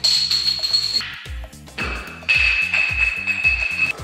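Background music with a steady beat, with a high held tone over the first second and another held tone from a little past two seconds in.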